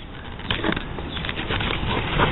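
Old Hickory paring knife skiving the flesh side of a leather flap: a dry scraping with fine crackles that grows louder toward the end.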